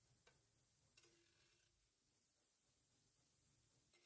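Near silence, with only a couple of very faint clicks.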